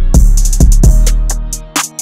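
Trap instrumental beat: a deep, sustained 808 bass note under drum-machine hi-hats and snares, with a melodic line on top. The bass drops out near the end.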